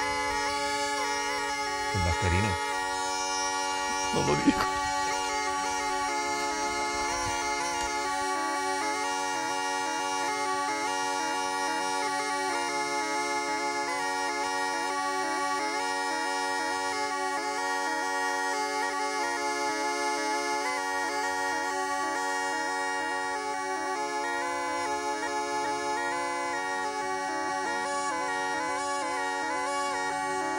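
Zampogna, the Italian bagpipe with twin wooden chanters, playing a melody over a steady drone. There are two brief knocks about two and four seconds in.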